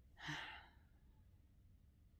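A woman sighing once: a short breathy exhale near the start, followed by faint room tone.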